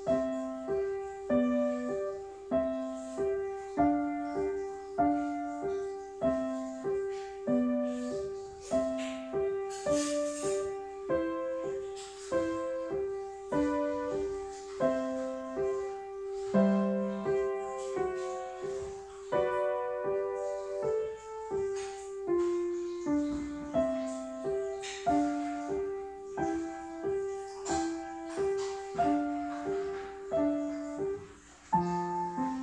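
Upright piano played with both hands: an evenly paced piece, a repeating accompaniment figure in the middle register under a higher melody.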